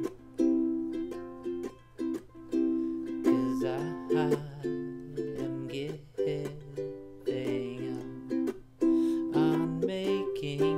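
Ukulele strumming chords; each strum rings and then fades before the next.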